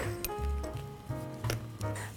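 Background music with a repeating bass line and sustained notes, with a few faint light clicks over it.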